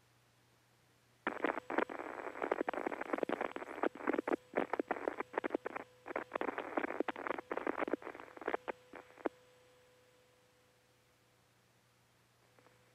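Crackling radio static on a narrow-band air-to-ground communications channel: a dense, irregular run of pops and hiss. It cuts in abruptly about a second in and stops about nine seconds in.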